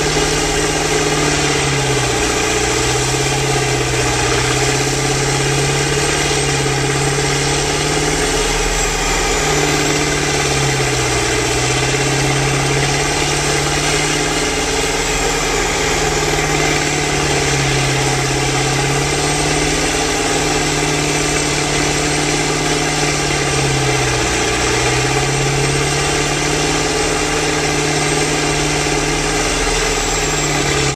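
Tub grinder grinding round hay bales: a loud, steady diesel engine drone over the grinding noise, the pitch sagging briefly every few seconds as the engine labours under load.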